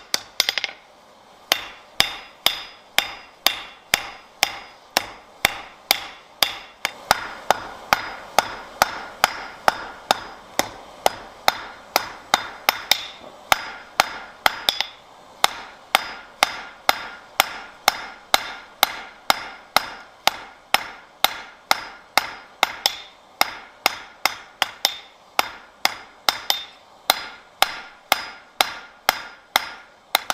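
Blacksmith's hand hammer striking a red-hot bar on an anvil in a steady rhythm of about two to three blows a second, each blow with a short metallic ring. There is a brief pause about a second in.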